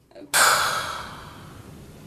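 A person's heavy, breathy exhale that starts suddenly and loud, then fades away over about two seconds.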